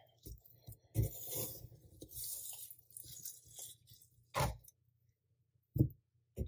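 Metal ice cream scoop scraping and digging through hard-frozen ice cream in a paper tub for a few seconds. Several sharp knocks follow, the loudest just before the end.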